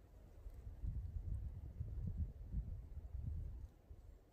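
Wind buffeting the microphone outdoors: a low, uneven rumble that swells about half a second in and drops away just before the end.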